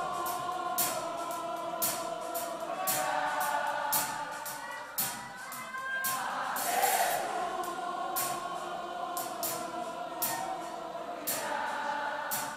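Live gospel worship music: many voices singing held notes together over a band, with a steady drum beat of about two strokes a second.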